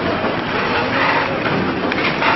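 Horizontal pillow-pack biscuit packing machine running, a steady mechanical noise with brighter swishes coming and going.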